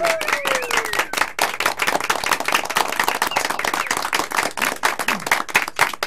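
A small group applauding by hand, with dense, even clapping throughout. A voice trails downward in pitch over the first second.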